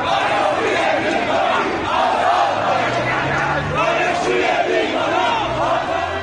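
Large crowd shouting and yelling, many voices overlapping at a steady loud level.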